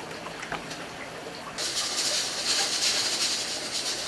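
Hair being washed at a basin: faint handling sounds, then a steady hissing rush of water and rubbing through wet hair starts suddenly about a second and a half in.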